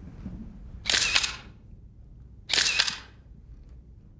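SLR camera shutters firing in two short, rapid runs of clicks, about a second in and again a second and a half later.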